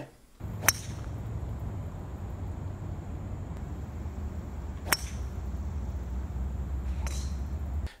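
A golf driver striking a ball twice, each a single sharp click with a brief high ring, about four seconds apart, over a steady low rumble of wind on the microphone.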